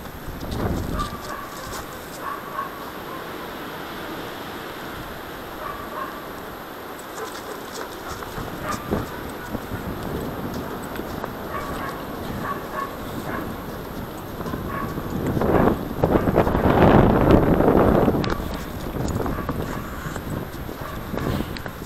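Footsteps on thin snow, with rubbing and wind noise on a body-worn action camera's microphone that grows loudest and roughest from about 15 to 18 seconds in.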